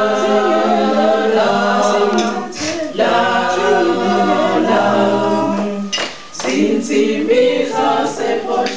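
A group of voices singing together unaccompanied, with short breaks between phrases a little under three seconds in and again at about six seconds.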